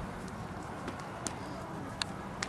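Horse cantering on sand arena footing: soft, muffled hoofbeats over steady outdoor background noise, with a couple of sharp clicks.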